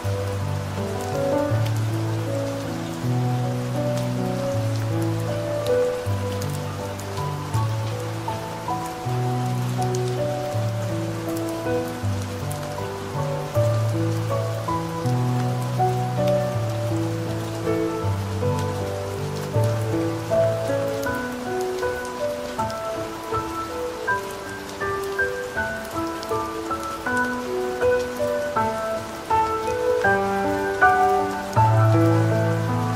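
Calm, slow solo piano music, a low bass line under soft chords and single notes, over a steady soft rain ambience.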